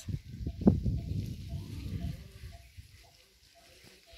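Low, irregular rumbling on the phone microphone, sharpest about a second in, dying away after two and a half seconds. Faint short high notes then repeat in the background.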